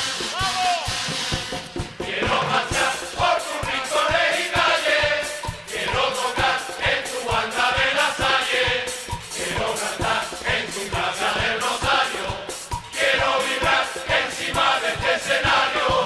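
Carnival murga: a large male chorus singing together with kazoo-like pitos, over a steady drum beat.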